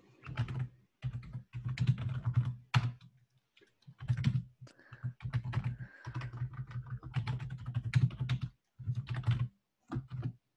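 Typing on a computer keyboard: keystrokes in several quick runs with short pauses between, as commands are entered in a terminal.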